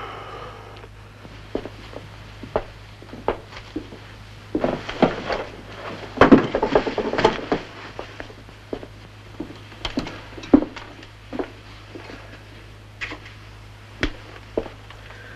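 A scuffle: a run of short thumps, knocks and clicks, thickest and loudest about five to seven seconds in, over a steady low hum.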